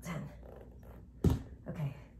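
Short low vocal sounds near the start and again near the end, with a sharp thump about a second in that is the loudest sound.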